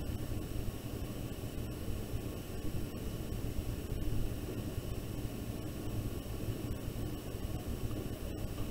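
Steady background hiss with a low hum, room noise picked up by the microphone, with no distinct sounds standing out.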